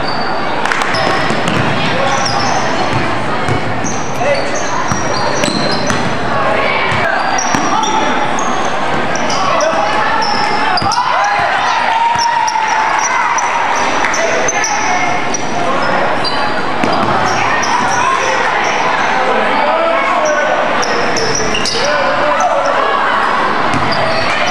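Crowd of spectators chattering in a large gymnasium during a basketball game, with a basketball bouncing on the hardwood floor and many short, high-pitched sneaker squeaks from the players.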